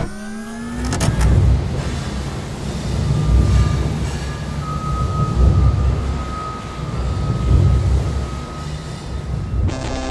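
Cinematic sound effects for an animated logo reveal. A rising sweep in the first second opens into a low, surging mechanical rumble, with a thin steady high tone over its middle. A burst swells up near the end.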